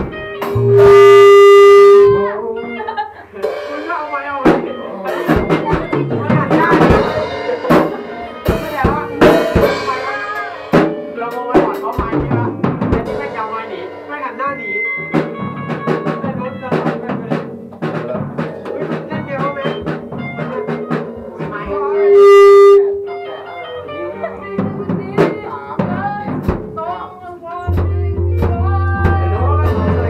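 A rock band playing live in a practice room: drum kit, electric guitars and bass guitar with a singing voice. Two very loud held tones, about a second each, stand out near the start and about 22 seconds in, and a steady low bass note sounds near the end.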